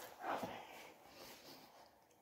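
Faint mouth sounds of a person eating a sandwich: a short breathy vocal noise just after the start, then a few soft, faint sounds.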